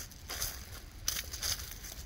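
Footsteps crunching through dry fallen leaves, a few crackling steps.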